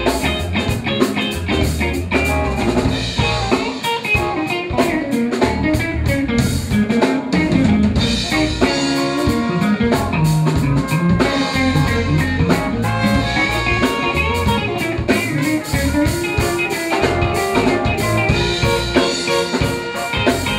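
Live jazz band improvising: electric guitar playing over a drum kit with many quick hits and a bass line underneath.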